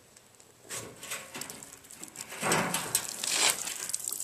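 A homemade drain valve, a threaded steel bolt with a tapered end, being unscrewed from the bottom outlet of a water-filled tank, with small metal clicks. From about two and a half seconds in, water starts to run out of the opened valve and splash onto gravel.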